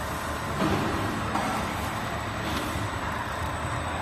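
Label slitting machine with rotary die-cutting stations running steadily: a constant mechanical hum of motors and turning rollers, with a brief louder rise about half a second in.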